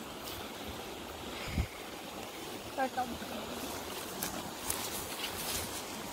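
Steady rush of flowing stream water, with grass rustling and brushing underfoot. A faint far-off voice comes in briefly about three seconds in.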